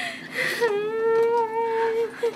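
A woman weeping aloud: a short wavering sob, then a long wailing cry held on one high pitch for over a second.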